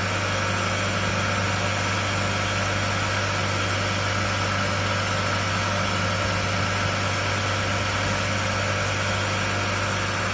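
Ten-spindle high-speed coil winding machine for shaded-pole motor stators running steadily: a constant low hum with a steady high whine over it.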